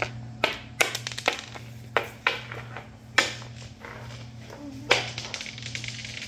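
A small plastic toy figure tapped and knocked on a wooden floor: about a dozen irregular sharp taps and clicks, with a low steady hum underneath.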